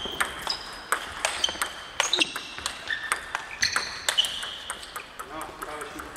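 Table tennis ball clicking off the paddles and the table during a rally, each hit followed by a short high ring, about two hits a second, thinning out near the end as the rally stops. More ball clicks come from play at neighbouring tables in the hall.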